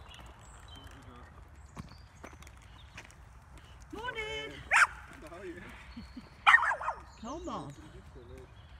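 A dog barking: a pitched bark about four seconds in, then a louder bark with a few more calls about two seconds later.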